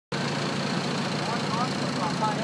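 Engine-driven generator on a squid-fishing boat running steadily, a constant low hum with a thin high whine over it; it powers the lamps used to lure squid.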